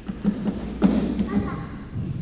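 Several dull thumps and knocks, the loudest just under a second in, among brief snatches of children's voices.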